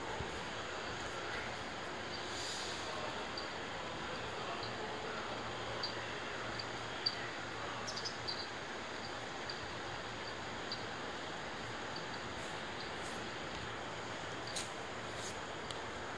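Steady hiss of a JR 107 series electric train standing at the platform, its rooftop air-conditioning and onboard equipment running, with a few faint scattered ticks.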